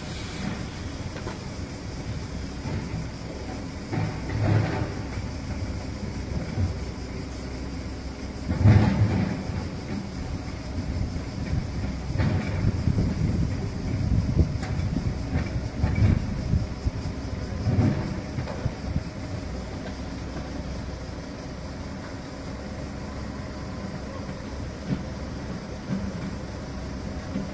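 Construction site noise: heavy machinery running steadily, with uneven low rumbling swells that come and go through the middle stretch.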